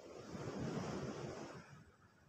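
A gust of wind buffeting the microphone, a rushing noise with an irregular low rumble that swells, peaks about a second in and dies away near the end.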